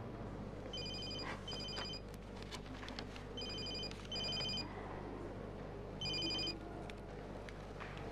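Mobile phone ringing with an electronic ringtone: pairs of short, high beeps repeating every two to three seconds. The third ring stops after a single beep as the call is answered.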